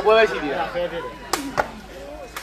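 A sepak takraw ball kicked hard on the serve: one sharp crack a little past the middle, followed a moment later by a fainter knock. Men's chatter runs under the start.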